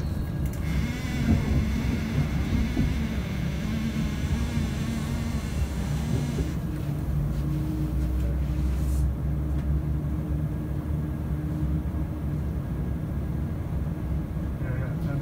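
East Midlands Railway Class 170 Turbostar diesel multiple unit running at speed, heard from inside the carriage: a steady rumble of the underfloor diesel engine and the wheels on the rails. A higher hiss over the first half stops about six seconds in, leaving the steady engine hum.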